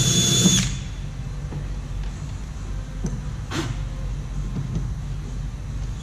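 Cordless drill running at a steady high whine as its 3/16-inch bit bores a screw hole through the kayak's plastic deck, cutting off about half a second in. After that only a low background hum remains, with a single short knock about three and a half seconds in.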